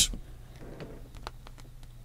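Faint handling sounds: a few light clicks and a soft rub as a hand picks up a clear plastic gel phone case.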